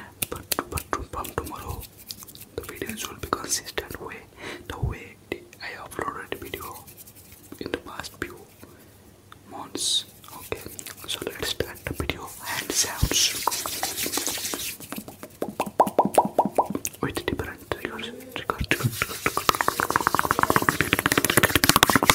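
Fast ASMR hand sounds close to the microphone: hands and fingers rubbing, tapping and clicking in quick runs, mixed with whispered mouth sounds. The clicking grows denser and louder in the second half.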